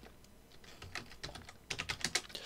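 Typing on a computer keyboard: a run of light key clicks, sparse at first and coming quicker and louder near the end.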